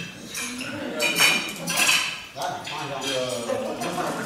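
Knives and forks clinking against plates and glasses, with a couple of sharper clinks about a second and two seconds in, over the chatter of many diners.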